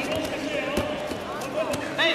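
Voices calling out in an arena during a judo bout, with a few short thuds in the first second.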